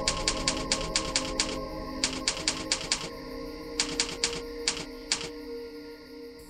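Typewriter-key sound effect: rapid sharp clicks in three runs with short pauses between, over a held, dark music drone.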